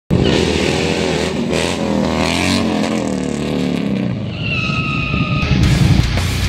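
Harley-Davidson V-twin motorcycle engine revving, its pitch rising and falling, then a steady high squeal for about a second, starting about four seconds in. Music starts near the end.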